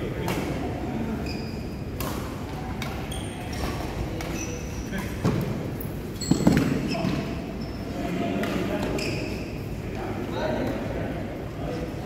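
Badminton rally: racket strings striking a shuttlecock, a sharp click every second or so, with a louder hit a little past the middle. Short high squeaks of shoes on the court mat come between the hits, echoing in a large hall.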